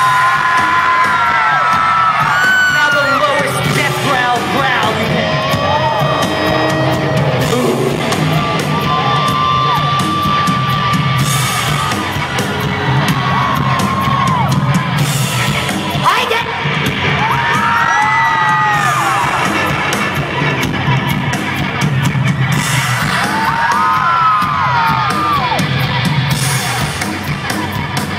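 Concert crowd answering the singer's call with their highest-pitched yells and squeals: clusters of wailing voices rise and fall every few seconds. Under them runs a steady, droning live rock band.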